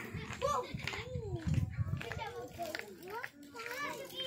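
A young child's voice babbling and chattering quietly in short sounds that rise and fall in pitch.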